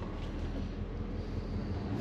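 A 1987 squarebody pickup's fuel-injected 305 V8 running steadily at low road speed, a low engine hum with light road and wind noise.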